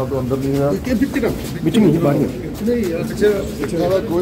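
Indistinct voices of people talking, the words not made out.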